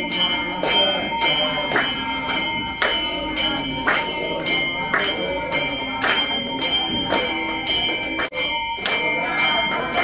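Devotional aarti: bells ring steadily throughout while people clap their hands to a regular beat, with voices singing along.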